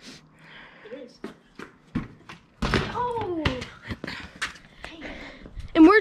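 A few sharp thumps of a basketball hitting the concrete driveway, and a child's long, falling 'ohh' about halfway through.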